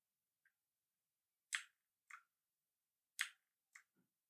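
A few short, soft computer-mouse clicks in two pairs, the second click of each pair fainter, over near silence.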